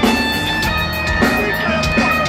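Live rock band playing through the PA, heard from the audience: sustained electric guitar chords over drum hits.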